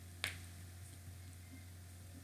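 A single light click, near the start, of a jumper wire's pin being pushed into a solderless breadboard.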